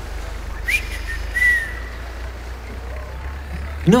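Two short, high whistle-like notes, the first a quick upward slide and the second a slightly arching note, followed by a faint held tone, over a low steady rumble.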